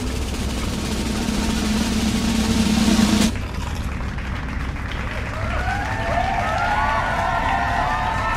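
A drum roll swells for about three seconds and cuts off abruptly. Music with overlapping, wavering tones follows.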